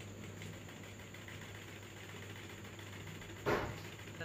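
Faint steady low hum, with one brief louder burst of noise about three and a half seconds in.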